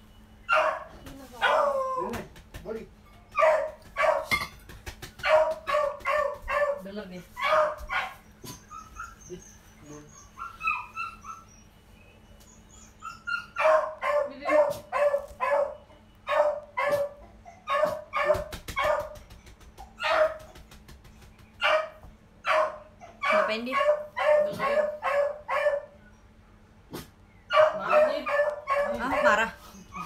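A pet dog barking over and over in quick runs of short, sharp barks. About a third of the way in there is a lull of a few seconds with faint high whines, and there is another brief pause a little before the end.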